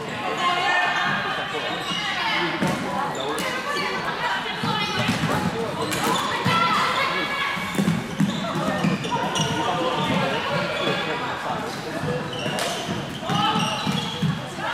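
Floorball game sounds echoing in a sports hall: plastic sticks clacking against the ball and floor, with players' shouts and calls.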